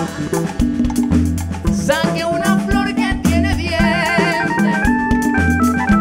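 A live band playing an upbeat Latin groove: a pulsing bass line, drum kit and hand percussion, with a melody that wavers with vibrato midway and turns to steadier held notes near the end.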